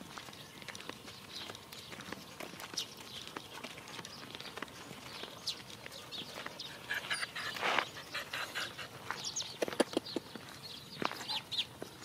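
Birds chirping and calling in short high notes, with a run of louder calls in the second half, over light footsteps on a dirt road.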